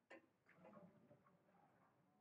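Near silence with one faint, sharp click just after the start: a computer mouse click.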